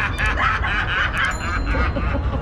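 A person giggling: a quick run of short snickering laughs in the first second or so.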